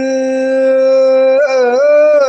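Amazigh rais music: a male singer holds one long, steady note, then bends into a short melodic turn near the end.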